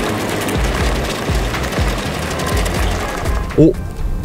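An Audi A8 pulling away slowly on four fully deflated run-flat tyres: a steady rolling noise from the flattened tyres on asphalt, with the car's engine underneath.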